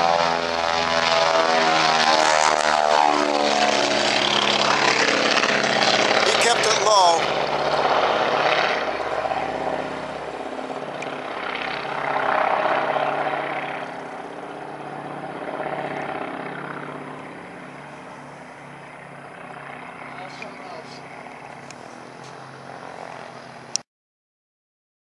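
Twin-engine propeller airplane flying low past along the runway and climbing away. The engine drone drops in pitch as it goes by, then fades steadily into the distance, and the sound cuts off abruptly just before the end.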